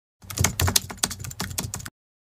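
Computer keyboard typing: a quick, irregular run of key clicks that stops abruptly just before the end.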